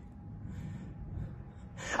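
A faint breath from the performer between spoken lines, over a low, steady room hum.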